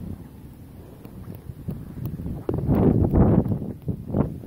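Rumbling and rubbing noise on a phone microphone as the phone is carried and handled, loudest for about a second near the end.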